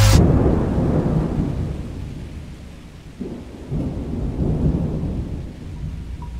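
Rolling thunder, likely a sound effect at a track change in a trap mix: a heavy low rumble that begins as the music cuts off and fades, then rolls again about three seconds in.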